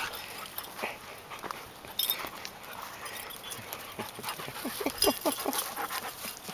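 Dogs playing rough on a dirt mound: paws scuffling and dogs panting, with a few short whining sounds about five seconds in.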